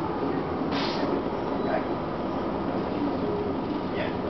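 Cabin of a 1999 Gillig Phantom transit bus under way: the steady rumble of its Detroit Diesel Series 50 diesel engine and Allison B400R automatic transmission, mixed with road noise. A short hiss comes about a second in.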